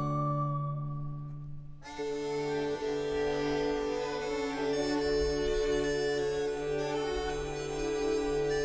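Baroque orchestra playing pastoral dance music over a steady held bass drone. A high held note dies away at the start, and about two seconds in the fuller ensemble enters with sustained chords.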